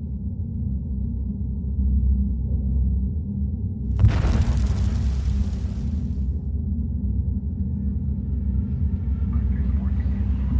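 A deep, steady low rumble, with a sudden rushing burst of noise about four seconds in that lasts about two seconds.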